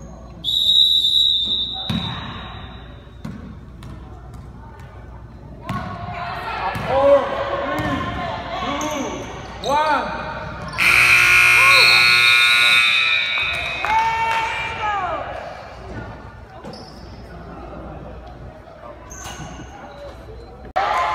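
A referee's whistle blows briefly about half a second in, followed by basketball bounces on a hardwood gym floor and shouting spectators. Past the middle, the scoreboard buzzer sounds for nearly three seconds to end the first quarter, with the crowd yelling around it.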